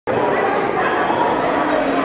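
People's voices, loud and continuous, starting abruptly.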